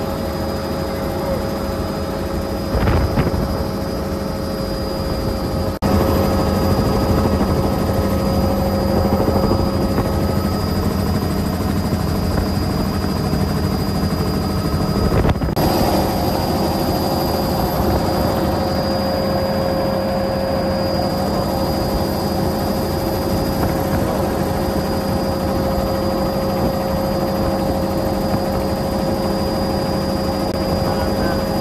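Helicopter in flight, heard from inside the cabin with the doors off: a steady rotor and engine noise carrying a constant high whine. About six seconds in it briefly drops out and comes back a little louder.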